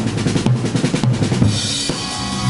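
Drum kit played with sticks in a fast, dense run of snare and drum strokes, with the band's bass and guitar sounding underneath.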